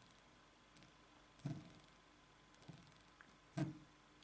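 Mostly quiet room tone with a few faint, short taps, the clearest about one and a half and three and a half seconds in: a fingertip tapping the glass touchscreen of an Asus Zenfone 2 smartphone.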